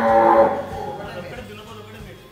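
A cow mooing: one long call that tails off about half a second in.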